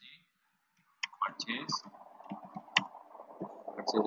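Computer keyboard typing and clicking: after about a second of dead silence, a run of sharp key clicks sets in, with a louder flurry near the end.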